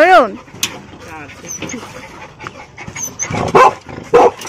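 Dogs barking: a wavering whine-like call at the start, then two loud short barks near the end.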